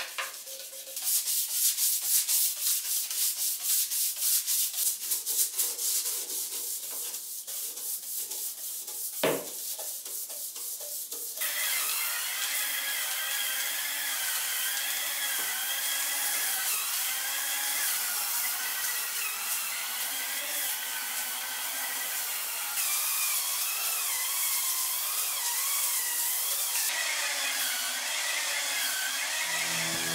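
A plastic hand scrub brush scrubbing a bathroom sink and faucet in rapid back-and-forth strokes, with a single knock a little before the strokes stop. About eleven seconds in, an electric spin scrubber on a pole starts running on the tile floor, its motor whine wavering steadily as the spinning brush head presses on the tiles.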